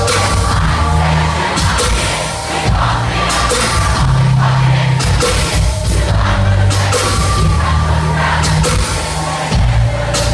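Loud live hip-hop concert music over a PA, with a deep bass line moving in steps under drums and vocals.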